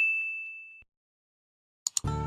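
A bell-like 'ding' notification sound effect from a subscribe-button animation rings out as one clear tone and fades away within the first second. Near the end come two short mouse-click sound effects.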